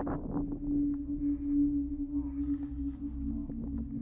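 A steady low droning hum over a low rumble, stepping slightly lower in pitch a little after three seconds in, with faint short clicks scattered through it.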